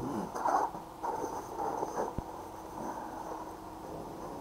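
A man's breathing close to the microphone, in soft irregular swells, with a single faint click about two seconds in.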